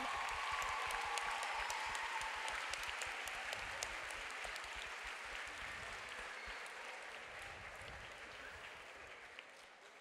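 Audience applauding in a hall, starting loud and slowly dying away.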